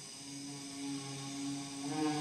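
A tuba and a hadrosaur-skull wind instrument, blown through a balloon-and-brass-pipe mechanical larynx, hold two low notes together, the lower one entering just after the higher and the sound slowly swelling.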